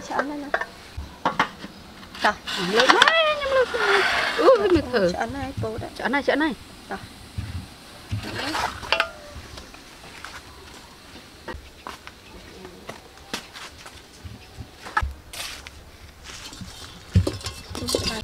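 Voices talking, with scattered clicks and knocks of an aluminium cooking pot and utensils being handled, and a sharper knock near the end.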